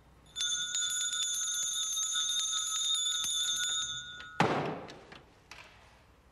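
Small brass hand bell rung rapidly for about four seconds, a bright ringing with many quick strikes, then a single loud thud just after it stops.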